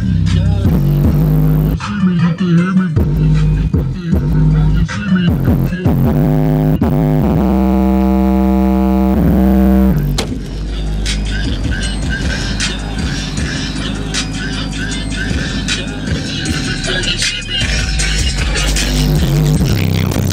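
A hip-hop track with rap vocals played loud through a car sound system: two 12-inch Pioneer subwoofers in a sealed box driven by a 2000-watt Lanzar Heritage HTG257 amplifier, with heavy, constant bass. About seven seconds in, a held buzzing synth note sounds for roughly two and a half seconds.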